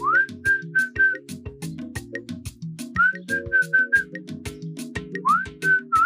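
A man whistles three short phrases, each a rising glide into a few short repeated notes, over background music with a steady clicking beat and low chords.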